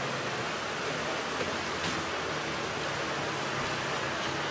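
Steady outdoor background noise: an even hiss with a faint low hum underneath and no clear single event.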